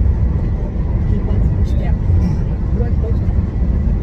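Steady low road and tyre rumble inside the cabin of a moving Tesla Model 3 Performance; the electric drive itself is nearly silent, so the rumble is road noise.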